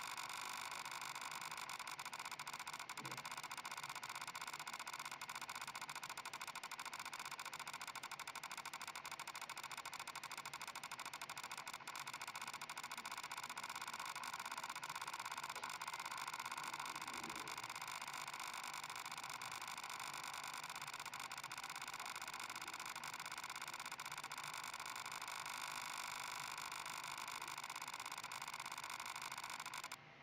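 A steady machine hum made up of several steady tones over a faint hiss, unchanged throughout.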